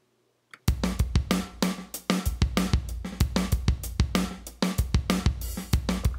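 Programmed funk drum-kit groove from a template's MIDI drum track, played back in Pro Tools. Kick, snare and hi-hat hits run in a steady, quick rhythm, starting about two-thirds of a second in after silence.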